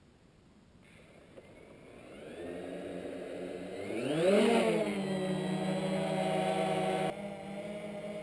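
UP Air One quadcopter's motors and propellers spinning up, a whine that climbs in pitch over a couple of seconds as it lifts off, then holds a steady hovering hum that drops in level near the end.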